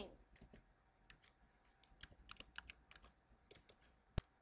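Faint typing on a computer keyboard: a scatter of light, irregular key clicks from about a second in until shortly before the end, as a name is keyed in.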